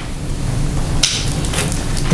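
Steady low rumbling room noise with a short hissing rustle about a second in.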